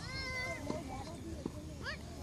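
A child's high-pitched, drawn-out shout from the field, held and then falling, with a short rising call near the end and faint knocks of players moving.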